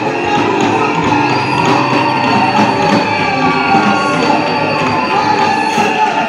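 Live church worship band music: guitar and sustained instrument tones over a steady percussion beat.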